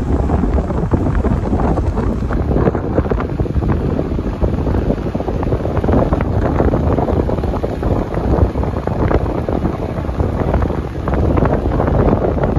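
Wind rushing over the microphone of a camera on a moving vehicle: a steady, low rumbling noise throughout.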